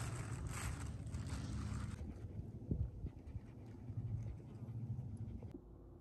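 A small dog panting, with wind rumbling on the microphone; the breathy upper part fades about two seconds in.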